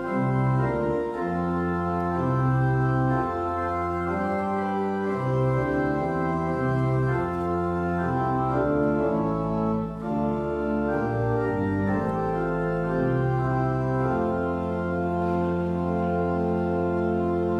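Church organ playing the closing hymn in sustained full chords that change step by step, with a brief dip near the middle.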